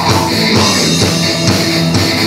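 Heavy metal band playing an instrumental passage: distorted electric guitar over a drum kit keeping a steady beat, with no vocals.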